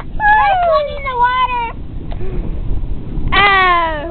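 People crying out in long, falling wails: one for about a second and a half at the start, another near the end, over a steady low rumble.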